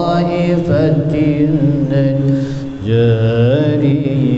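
A man's solo unaccompanied chant in maqam Rakbi, sung through a microphone in a reverberant hall. It has long held notes with wavering ornamental turns; after a brief breath near the middle, the voice comes back louder on a higher note.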